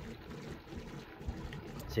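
Faint outdoor background noise with a low rumble.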